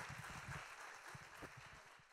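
Audience applause fading out.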